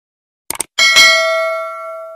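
Subscribe-button animation sound effect: a quick double mouse click about half a second in, then a bright bell ding that rings on and slowly fades.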